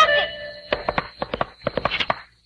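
Cartoon sound effect of a horse's hooves: a quick, uneven run of sharp clip-clop clicks over faint sustained tones.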